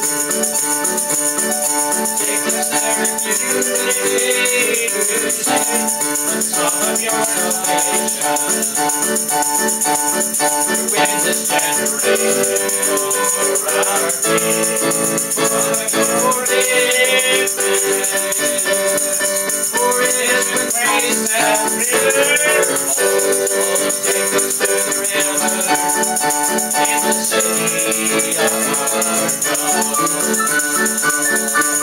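Worship song played on a digital piano keyboard, with a man's singing voice and a tambourine shaken along steadily throughout.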